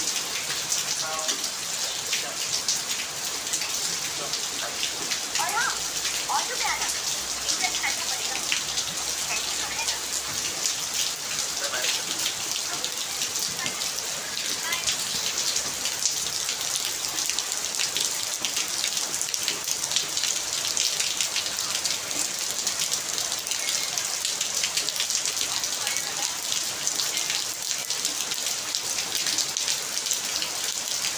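Heavy rain falling steadily onto wet paving and puddles, a dense even hiss of countless drops with fine individual splats.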